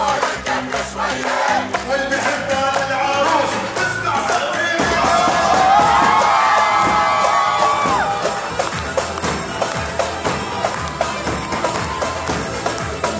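Live zaffe music: a singer on a microphone over a steady beat on large double-headed zaffe drums, with the crowd singing along, clapping and cheering. In the middle a long, high held vocal line rises over the drums and is the loudest part.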